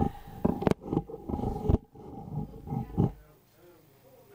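A person laughing and making playful vocal noises, with two sharp knocks about a second apart, over a steady high hum. Everything drops away about three seconds in, leaving faint room noise.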